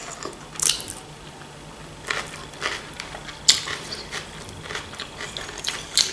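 Chewing and soft wet mouth sounds of someone eating, with a few short sharp clicks of a metal fork against a china plate.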